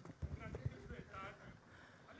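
Faint, indistinct talking in a hall, away from the microphone, with a few soft low thumps in the first second.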